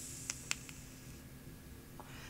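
A mouth-to-lung draw on a Joyetech Teros One pod vape on a cooled-down coil: a faint hiss of air pulled through the mouthpiece with two or three small lip or mouthpiece clicks near the start, fading after about a second.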